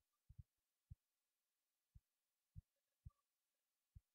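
Near silence, with a handful of faint, short, low thumps at irregular intervals.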